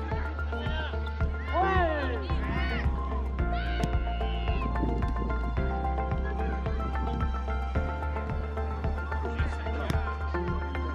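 Background music with a steady beat and a deep bass. A voice slides up and down in pitch between about one and a half and three seconds in.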